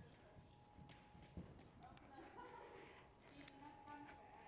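Faint, irregular hoofbeats of horses moving on an indoor arena's sand surface, over a faint steady hum.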